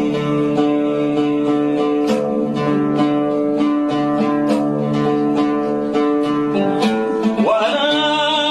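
Sudanese song: a plucked string instrument plays repeated strokes over a long held note. Near the end a male voice comes in with a wavering sung line.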